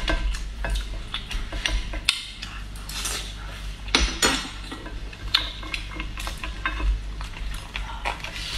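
A metal fork prodding and scraping a whole cooked lobster on a ceramic plate while the shell is handled: irregular clicks and scrapes, with a few sharper knocks.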